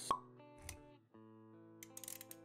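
Intro music sting: quiet held synth-like tones with a sharp pop sound effect just after the start and a soft low thump about two-thirds of a second in, the tones dropping out briefly around one second before starting again.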